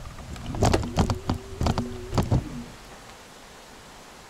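Electric kick scooter's motor giving a steady buzzing whine for about two seconds as it moves off and turns, then cutting out. Several sharp knocks and rattles, the loudest sounds, land over the whine.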